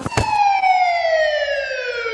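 Police car siren wailing: one long sweep falling steadily in pitch, with a short click at the start.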